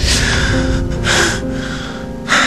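A man gasping hard in pain, two heavy breaths in a row, over background music with steady held notes.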